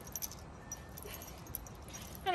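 Faint jingling and clinking of a dog's leash and collar hardware as the puppy moves about, a few light metallic ticks over a low outdoor background.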